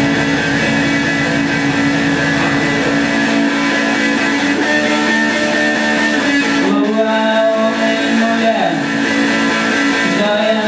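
Live improvised guitar music: held, droning notes that ring on steadily, with a few slow pitch slides in the second half.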